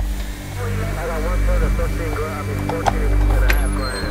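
Vacuum cleaner motor running with a steady low hum, with short warbling chirps over it.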